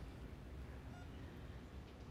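Quiet hospital-room tone: a low steady hum with a couple of faint short beeps from a bedside patient monitor, about a second apart.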